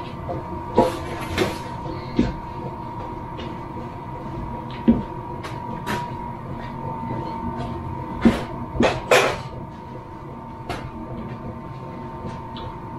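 Scattered knocks and clunks of wooden lengths and a chop saw being moved about by hand, over a faint steady hum.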